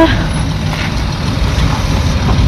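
SUV towing a horse trailer driving slowly past, its engine making a steady low rumble.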